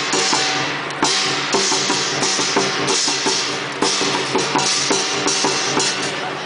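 Lion dance percussion: a large Chinese lion drum beaten in a fast, steady rhythm, with cymbal crashes about twice a second.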